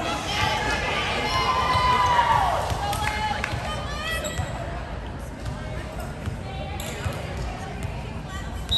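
Players and spectators calling out and cheering in a gymnasium, several voices overlapping with one falling shout, and a volleyball knocking on the hardwood floor a few times.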